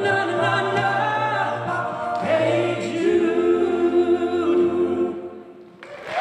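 All-male a cappella group singing long held chords over a steady low bass voice, the chord shifting a few times; the last chord dies away near the end.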